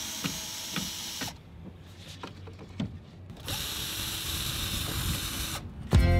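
Cordless drill running in two bursts, about a second and about two seconds long with a pause between, backing screws out of a wooden frame.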